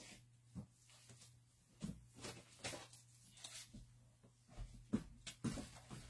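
Faint, scattered rustles and soft taps of paper and cellophane-wrapped paper packs being handled and sorted, over a low steady hum.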